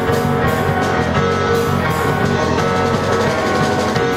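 Live rock band playing through amplifiers: electric guitars over a drum kit, loud and steady.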